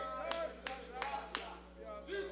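Four sharp hand claps, evenly spaced about a third of a second apart.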